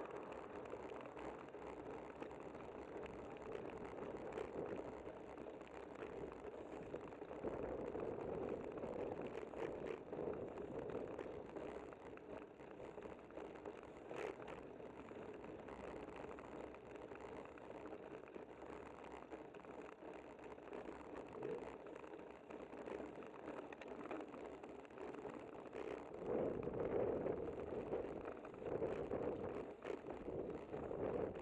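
Riding noise from a camera mounted on a bicycle: a steady rush of tyres on the concrete road and moving air, with one sharp tick about halfway through. It gets louder for a few seconds near the end.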